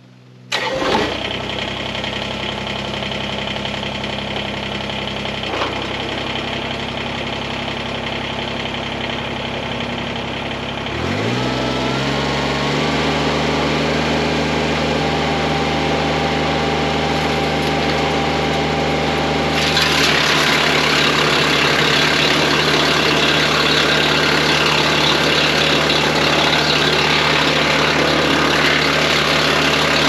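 Kubota BX23S sub-compact tractor's three-cylinder diesel starting about half a second in and running steadily. Around eleven seconds in, the engine revs up and the PTO-driven wood chipper on the back spins up, rising in pitch and settling. From about twenty seconds in, branches are fed through the chipper, adding a louder chipping noise as wood chips blow into a trailer.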